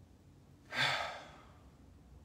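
A man's single forceful exhale, about three quarters of a second in, fading within half a second: the release breath of a shoulder-relaxation exercise, let out as the raised shoulders drop after a held inhale.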